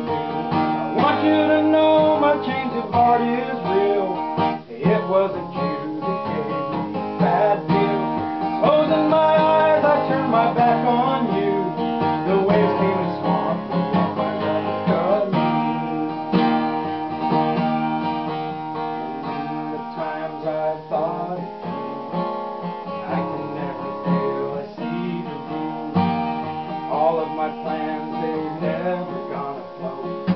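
Acoustic guitar strummed steadily in chords through an instrumental break between sung verses.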